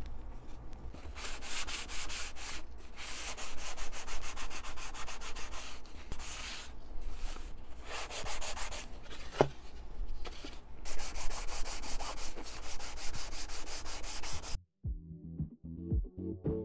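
Hand sanding block with sandpaper rubbing over balsa wood in repeated back-and-forth strokes, shaping a model plane's tail parts. About a second before the end the sanding cuts off and music begins.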